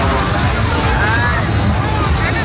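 Loud crowd din: many voices calling and shouting over one another, over a heavy low rumble.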